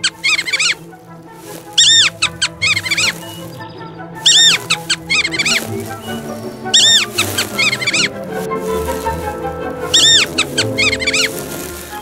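Naked mole rats squeaking: short clusters of high-pitched chirping squeaks every second or two, over classical background music.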